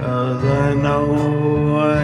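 Man singing into a microphone, holding long drawn-out notes in a slow ballad over soft backing music.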